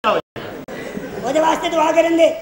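Speech only: stage-play dialogue, one voice talking almost throughout.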